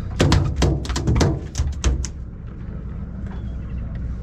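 Freshly landed tuna beating its tail against the boat's deck: a quick, irregular run of about eight sharp thuds in the first two seconds, then it stops. A steady low rumble from the boat runs underneath.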